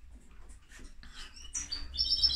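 A small bird chirping: a few short, high-pitched chirps near the end, over faint room noise.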